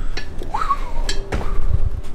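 Scattered knocks and clinks of someone climbing down a ladder while holding the camera, with low handling rumble on the microphone in the second half.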